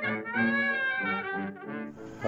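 Jazz trumpet playing a phrase: a few short notes, one note held for about half a second with a slight waver, then more short notes.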